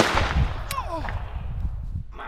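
A single loud shot hits just before the start and dies away over about half a second. Low wind rumble on the microphone follows, with a few short falling squeaks about a second in.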